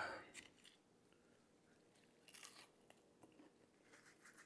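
Faint crunching and chewing of a bite of breaded, Southern-fried quail breast, with a brief crunch about two and a half seconds in. A few light clicks of a fork near the start.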